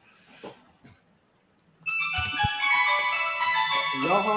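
A phone ringtone playing a melody of steady electronic tones, starting suddenly about two seconds in and still going at the end.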